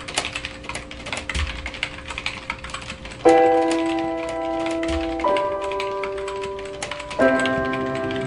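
Rapid typing: a dense, irregular run of key clicks. Sustained music chords come in suddenly about three seconds in and change twice.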